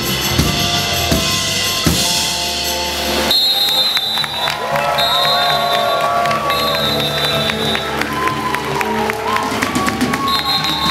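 Live band playing a hip-hop/jazz groove with drum kit and bass. About three seconds in the kick drum and bass drop out, leaving sustained, sliding melodic tones over light, steady cymbal ticks.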